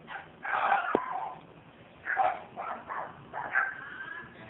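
A pet animal calling in a series of short vocal bursts, with a sharp click about a second in.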